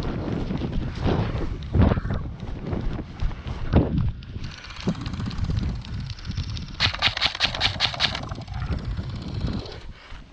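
Wind buffeting the microphone and footfalls through dry grass while running. About seven seconds in comes a rapid burst of about ten airsoft rifle shots lasting just over a second.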